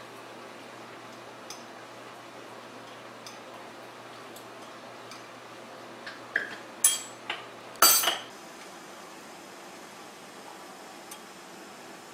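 A metal spoon scooping sugar from a ceramic sugar pot into a small metal cup. There are faint scrapes and taps, then a few sharp clinks about seven and eight seconds in, over a low steady hum that stops about eight seconds in.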